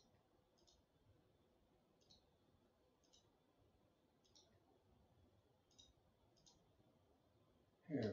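Faint computer mouse clicks, about seven scattered at irregular intervals over near silence. A brief, louder voice-like noise comes right at the end.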